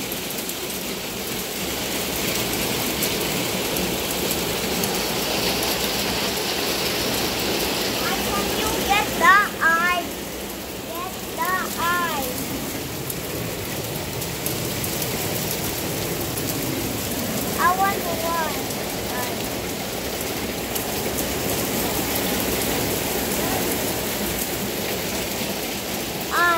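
Small hail and rain falling steadily onto a wooden deck, an even hiss of pattering that runs on without a break.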